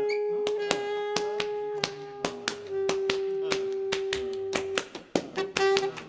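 Free-improvised reed ensemble music from a saxophone group: long held reed notes, the pitch shifting once partway through, laced with many sharp percussive clicks. The held tone breaks off near the end, leaving scattered clicks and short notes.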